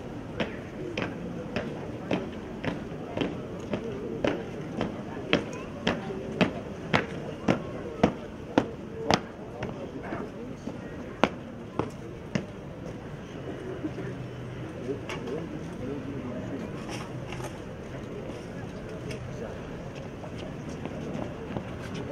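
Honor guard soldiers' boots striking stone paving in a slow ceremonial march: sharp, evenly spaced steps about two a second that stop about twelve seconds in, over a low background murmur of voices.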